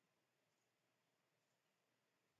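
Near silence: a faint, even background hiss.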